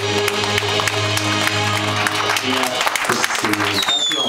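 The last held note of a woman singing a ballad over a backing track, the chord fading out about two and a half seconds in, as scattered clapping starts. Near the end comes a short high tone that falls in pitch.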